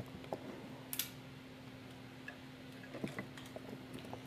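Plastic Lego Bionicle parts clicking and knocking as they are handled and fitted together. The clicks are sparse, with a sharp one about a second in and a small cluster near the end. A faint steady hum runs underneath.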